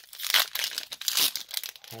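Foil wrapper of a Pokémon trading card booster pack crinkling and tearing as it is ripped open by hand, an uneven run of crackles with the loudest near half a second in and just after a second in.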